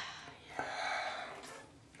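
A man breathing hard between swigs of a forty-ounce malt liquor: a sharp catch of breath, then a breath out lasting about a second that fades away, and another sharp catch at the end.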